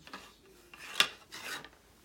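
Rubbing and scraping of objects being handled, a few short strokes with one sharp click about a second in.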